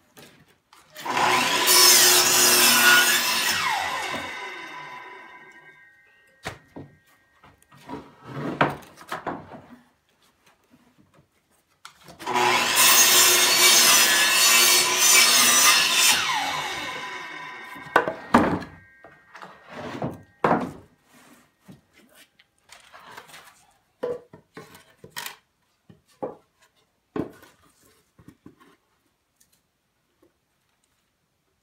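Sliding compound miter saw cutting through wooden boards twice, each cut a loud stretch of about three seconds that fades away over the next two. Scattered knocks and clatter of wood follow.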